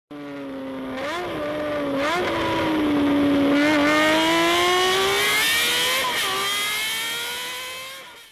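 A high-revving vehicle engine, its pitch climbing slowly with four short blips in pitch along the way. It grows louder over the first few seconds and fades out near the end.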